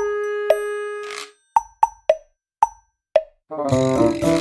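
Background music: a held synth note fades out, then five short pitched blips sound one by one with silent gaps between them, and the full backing track comes back in shortly before the end.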